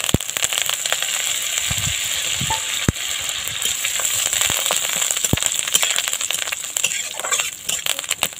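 Chopped neem leaves sizzling in hot mustard oil in a steel karai. The sizzle starts as the leaves go in, with a metal spatula scraping and clicking against the pan as they are stirred.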